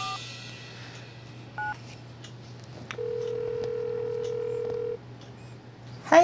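Mobile phone keypad tones as two keys are pressed, a short two-note beep at the start and another about a second and a half later. Then a steady ringback tone sounds for about two seconds as the call rings through.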